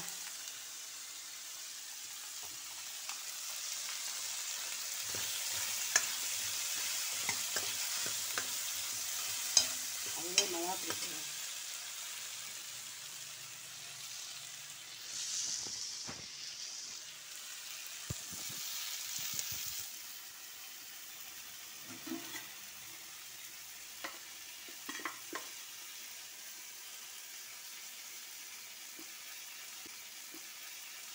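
Hot oil sizzling in a steel kadai, first around a frying papad and then around shallots and tomato being stir-fried. A metal ladle clicks and scrapes against the pan now and then.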